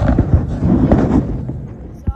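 Wind buffeting a phone microphone outdoors, mixed with road traffic: a loud, uneven low rumble that fades away near the end.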